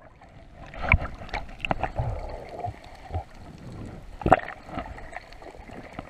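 Muffled underwater sound picked up by a submerged camera: water movement and bubbles, broken by a few irregular knocks, the loudest a little past four seconds in.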